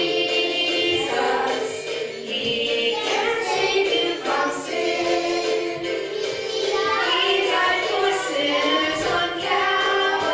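A woman and children singing a simple children's gospel song together, holding each sung note.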